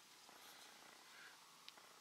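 Near silence: faint background hiss, with one tiny tick near the end.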